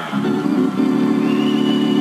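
Organ holding one steady low chord, with a thin high tone joining about halfway through.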